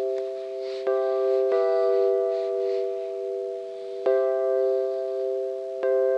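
Instrumental intro of sustained keyboard chords from a GarageBand for iPad software instrument: each chord is struck and held steady, changing about four times.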